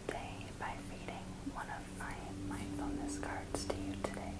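Soft whispered speech, with a couple of light clicks near the end.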